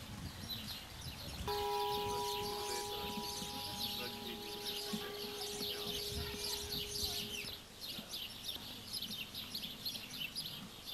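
Many small birds chirping busily in quick, high, repeated notes. A steady, even hum-like tone sounds under them from about a second and a half in until near the three-quarter mark, then stops.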